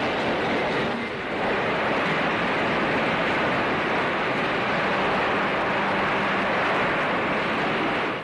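Steady factory-floor machinery noise: a loud, even rush with no distinct strokes or rhythm.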